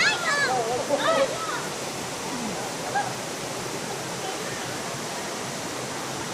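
Steady rushing of a small waterfall cascading over rocks into a shallow stream, with brief high voices in the first second or so.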